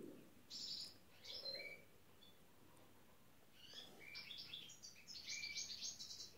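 Faint bird chirping: short runs of high chirps, a couple in the first two seconds and a busier run through the second half.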